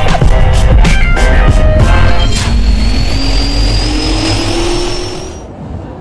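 Intro music with heavy bass and a few sharp hits, then a rising engine-like whine that fades out about five and a half seconds in.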